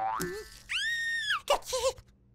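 Cartoon sound effects and a cartoon chick's small wobbling vocal noises. There is a short wobbly sound, then a long high cartoon tone held for about two-thirds of a second. After that comes a sharp click and another brief wobbly vocal sound near the end.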